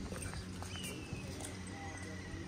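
Footsteps walking on brick paving: a few light, irregular clicks over a quiet outdoor background.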